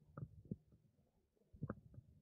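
Near silence: a faint low rumble with three soft knocks.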